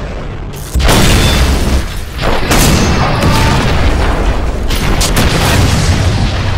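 Battle sound effects of explosions: a sudden loud boom about a second in, followed by a run of further blasts and heavy rumbling.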